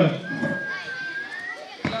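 Children's voices chattering in the audience, with one long, thin, high call that rises in pitch at its end. A short thump comes near the end.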